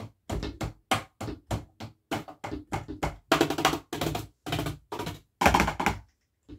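Wooden drumsticks striking the pads of an electronic drum kit with no amplified drum sound, so only the dull taps of stick on pad are heard. It is a run of hits, about four or five a second, becoming louder and denser in the second half like a drum fill.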